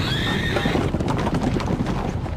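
A horse whinnies during the first second over the dense, rapid hoofbeats of many horses galloping.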